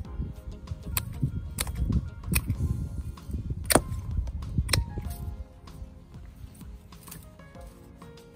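Hand pruning shears cutting thin woody panicle hydrangea stems: several sharp snips over the first five seconds, with rustling and handling rumble from the branches. Background music runs throughout.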